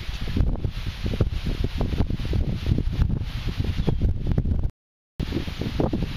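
Wind buffeting the microphone, a loud gusty rumble with rustling, while a fish is being played on rod and reel. The sound cuts out completely for about half a second near the end.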